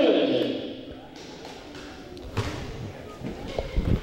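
Quiet gymnasium ambience with a few faint, widely spaced thuds.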